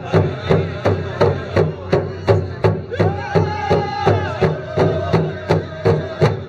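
A drum beaten in a steady beat, about three strikes a second, with a voice singing a long held note about halfway through and a lower note after it.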